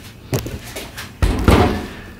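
A heavy jump starter pack, the Matco MJNC777 12 V power supply and jump starter, handled and set down on a metal workbench: a few light knocks, then a louder low thump about halfway through.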